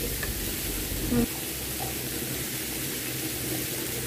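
Mixed vegetables and prawns cooking in a little oil in a nonstick frying pan: a steady, soft sizzle.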